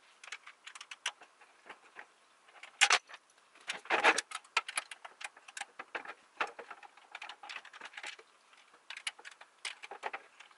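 Metal clinks, rattles and knocks from a rolling book cart's metal frame and basket being handled and taken apart, with a couple of louder knocks about three and four seconds in.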